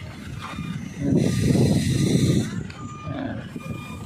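Wind buffeting the microphone in stormy weather, a low uneven rumble that surges into a louder hissing gust about a second in and eases off after two and a half seconds. A few faint short beeps sound near the end.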